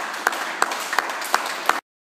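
A small group of onlookers clapping, with a few sharp, loud claps standing out about three times a second over the general noise of the crowd; it cuts off suddenly near the end.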